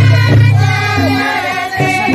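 A group of women singing a Santali Baha festival song together in chorus, over a steady low accompaniment that stops and restarts with the phrases.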